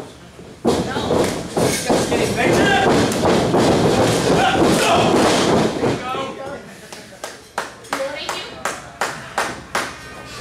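People's voices calling out in a large room, followed in the second half by a run of sharp smacks, about two a second.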